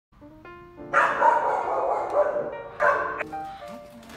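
Dogs barking in a shelter kennel, in two loud bouts: a long one about a second in and a short one near the three-second mark.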